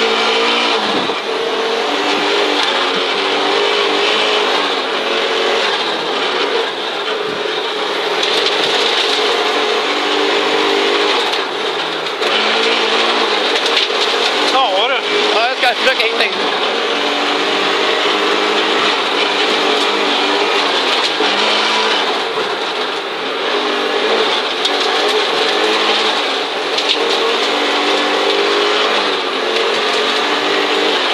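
Audi Quattro Group B's turbocharged five-cylinder engine heard from inside the cabin at full rally pace, revs rising and falling through gear changes. A brief wavering whine comes about halfway through.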